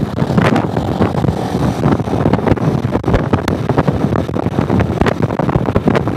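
Wind buffeting the microphone of a camera mounted on a moving motorcycle, a loud, rough rush with constant crackling gusts over the bike's running and road noise.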